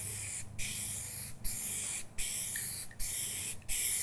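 Aerosol spray-paint can spraying in several passes, its hiss breaking off briefly about once a second.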